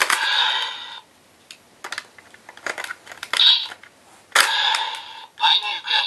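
DX Ultimate Gekiryuken toy sword: plastic clicks from its key slot and trigger, and bursts of electronic sound effects and voice calls from its small built-in speaker, about a second at the start, a short one in the middle, and a longer run from a sharp click near two-thirds of the way in.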